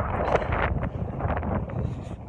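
Wind buffeting a phone's microphone outdoors: a ragged, gusty low rumble.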